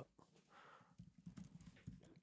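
Near silence: room tone with a few faint, soft taps in the second half.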